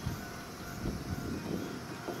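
Hankyu 8000 series electric commuter train approaching the station at low speed: a steady running noise with a few soft knocks.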